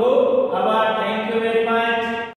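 A voice chanting in long held notes, shifting pitch a couple of times.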